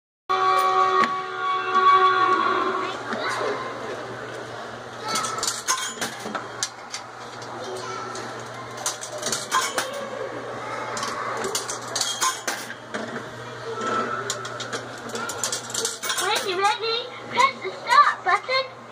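A steady tone for the first couple of seconds, then a scatter of light metallic clinks and taps, with a voice rising in pitch near the end.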